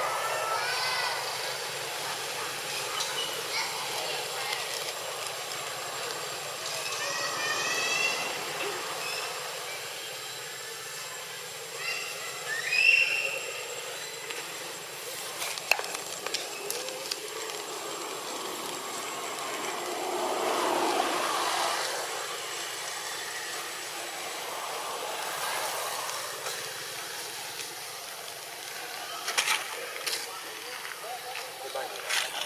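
Outdoor ambience with a few short, high-pitched macaque calls, the clearest about eight and thirteen seconds in.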